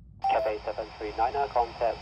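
Yaesu FT-60 handheld receiver picking up an air traffic control transmission on the AM airband: the squelch opens suddenly about a quarter second in and a voice comes through the small speaker with a steady radio hiss.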